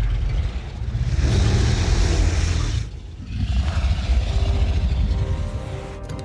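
Film sound design for the dragon Smaug: a deep, rumbling growl and roar, in two loud swells with a brief drop about three seconds in.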